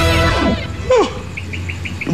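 A music jingle fades out, a brief falling voice-like sound follows about a second in, then birds chirp four short, quick high notes, a morning street ambience.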